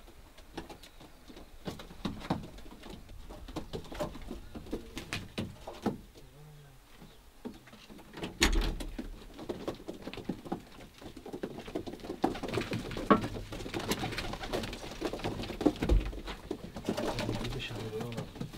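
Adana pigeons cooing inside a loft built into a van body, with scattered small clicks and shuffling. About eight and a half seconds in, the van's rear door opens with a clunk, and there is another low thump near the end.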